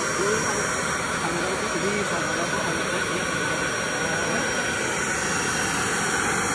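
Pullman Advance Commander 900 backpack vacuum running steadily: an even rush of motor and airflow with a whine in it. The hose is switched over to the exhaust port so the machine works as a blower.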